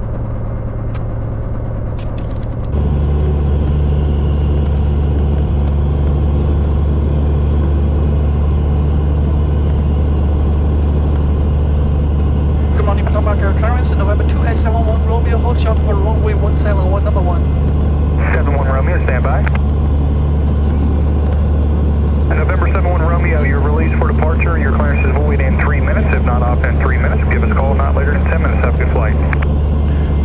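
Cessna 182's piston engine and propeller running steadily at taxi power, heard inside the cabin; the drone steps up louder about three seconds in. From about 13 seconds, and almost without break from about 22 seconds, thin radio-quality voices of an ATC exchange come in over the engine.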